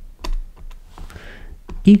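Stylus tapping and clicking on a pen tablet while writing, a handful of light, irregularly spaced ticks with a soft scratch about a second in.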